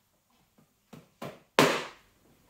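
A cloth towel flapped or shaken out in three quick swishes, each louder than the last, as it is brought down onto a freshly washed head.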